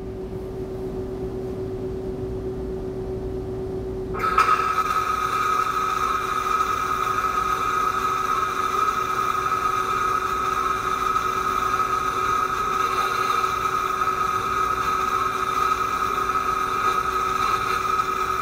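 Lincoln Electric VRTEX 360 virtual welding simulator playing its simulated flux-cored arc-welding sound. A low steady hum comes first; about four seconds in, a steady hiss with a high whine starts suddenly as the virtual arc is struck, and it holds evenly while the pass is run.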